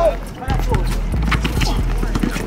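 Basketball being dribbled on a concrete court, with a series of sharp, irregular knocks from the bounces and the players' running footsteps. Players shout, one of them right at the start.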